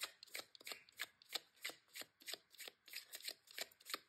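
Tarot deck being shuffled by hand: a steady run of faint, quick card snaps, about five a second.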